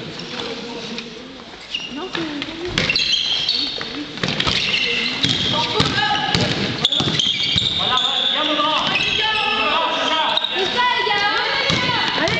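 A basketball bouncing and hitting the hard floor of a sports hall during a game, with players' voices calling out, echoing in the hall. The sharp knocks come irregularly, with more activity and louder voices in the second half.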